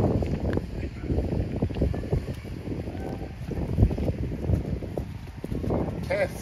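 Wind buffeting the microphone: an uneven low rumble that surges and fades.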